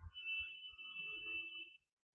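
A faint, steady high-pitched tone lasting about a second and a half, with fainter lower tones under it, cutting off near the end.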